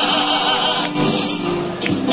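A Cádiz carnival coro singing a tango, many voices together in a steady, full sound.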